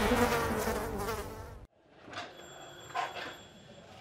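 Housefly buzzing sound effect, fading and then cutting off suddenly before two seconds in. Afterwards only faint room sound with a couple of soft clicks.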